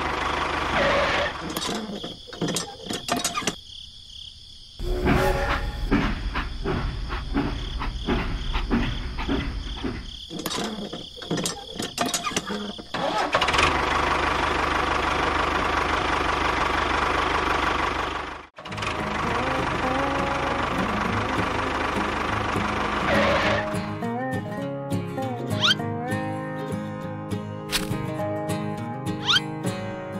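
An engine sound, dubbed over a toy tractor, runs steadily through the middle, with many clicks and knocks before it. Music with a melody comes in near the end.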